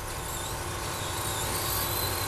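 Electric RC short-course trucks running on a dirt track, their motors giving a faint high-pitched whine that rises and falls over a steady low rumble of outdoor noise.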